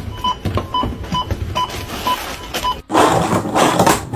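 Supermarket checkout flatbed barcode scanner beeping over and over as an item is swiped back and forth across it, with short beeps about two or three a second. Shortly before the end the beeping stops and a loud rushing noise takes over.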